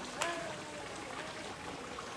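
Steady splashing of a fountain's water, an even hiss, with a brief tonal chirp-like sound about a quarter second in.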